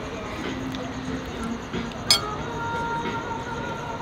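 A single sharp clink of tableware about halfway through, ringing on for about a second, over a steady murmur of background chatter.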